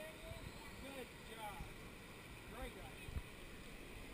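Faint wash of slow river water around an inner tube, with a few soft bumps and distant voices now and then.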